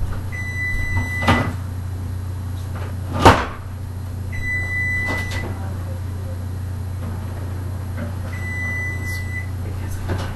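An oven timer beeping three times: long, steady beeps about four seconds apart, signalling that the cookies are done baking. A loud clunk comes between the first two beeps, with lighter knocks around them, over a low steady hum.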